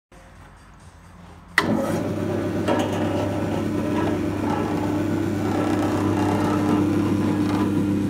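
Kimseed seed scarifier's small single-phase electric motor switched on with a click about a second and a half in, then running with a steady hum as it drives the abrasive discs.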